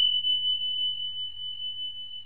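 Notification-bell sound effect of an animated subscribe button: a single high, pure ding that holds and slowly fades.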